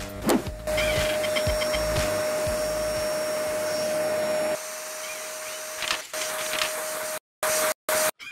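Vacuum cleaner sound effect for a cartoon cleaning robot sucking up debris: a steady whine over a hiss, starting about a second in. It drops in level about halfway through and cuts in and out near the end.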